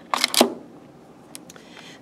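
A piece of amazonstone (green microcline feldspar) set down into its plastic specimen tray: two quick knocks about a quarter second apart, then a couple of faint ticks.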